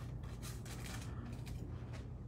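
Soft, repeated scraping strokes of a hair-colour tint brush spreading lightener over hair laid on aluminium foil, about three strokes a second, dying away after about a second and a half. A low steady hum runs underneath.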